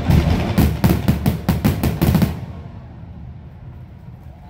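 Aerial fireworks in a show finale: a rapid string of bangs, about five or six a second, that stops abruptly a little over two seconds in, leaving a lower rumble.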